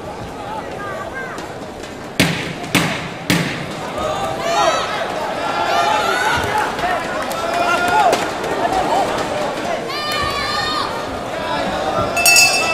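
Ringside shouting during a live boxing bout, with several raised male voices calling out over a steady crowd background. Three sharp smacks come in quick succession about two seconds in.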